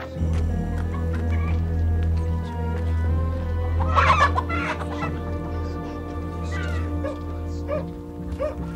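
Chickens clucking and squawking, with a loud burst of squawks about four seconds in and shorter calls near the end, over background music of held low notes.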